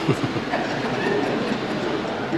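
Steady, even background noise of a large hall, a rushing rumble with no single distinct event.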